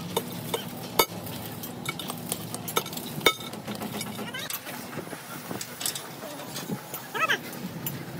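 Hand spreader scraping and tapping filler putty onto the steel drum of a concrete mixer, with sharp clicks about a second and about three seconds in, over a steady low hum.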